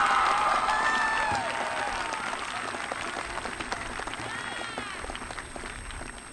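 Crowd applauding with a few cheers, the clapping gradually fading away.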